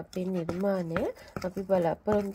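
Metal spoon scraping and clicking against a ceramic bowl while dry plaster of paris powder is stirred, with a few sharp knocks. A woman's voice sounds over it.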